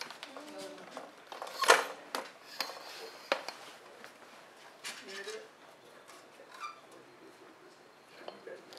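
Scattered clicks and knocks of metal studio lighting gear being handled and fitted, plausibly barn doors going onto the light. The loudest knock comes a little under two seconds in, with low murmured voices underneath.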